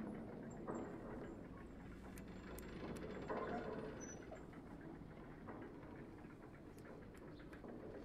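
Faint rustling and handling noises as cloth and small objects are moved about, with a few light clicks.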